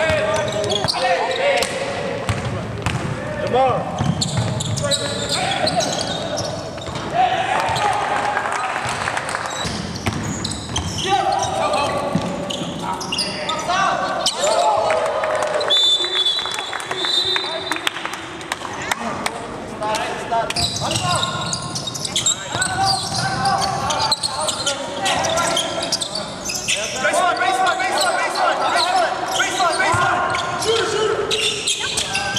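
Live basketball court sound: a ball being dribbled on a hardwood floor while players call out to each other, in a large, empty arena. A brief high steady squeal comes about halfway through.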